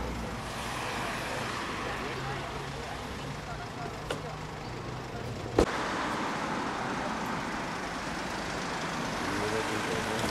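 Steady street traffic noise with a low engine hum in the first half, and a sharp click about halfway through.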